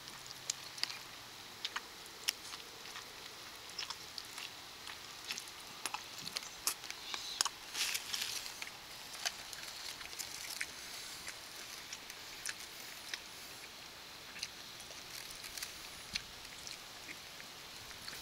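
A burger being eaten from its foil wrapper: scattered soft clicks and crinkles of the foil being handled, with chewing, busiest about halfway through.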